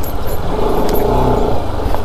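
Bajaj Pulsar RS200's single-cylinder engine running steadily at low revs while the motorcycle rides slowly over a rough dirt track.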